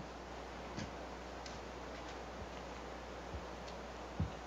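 Quiet room tone broken by a handful of faint, short taps and clicks as a person stands up from a table and gathers papers.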